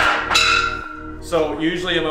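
A sharp clang with a bell-like ring that dies away over about a second, then a man starts speaking.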